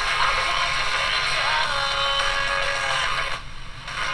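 Classical music played through the small speaker of a GE 7-2001 Thinline portable radio tuned to an FM station. It drops off briefly near the end.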